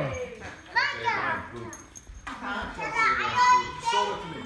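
Young children squealing and calling out as they play. One burst comes about a second in and another near the end.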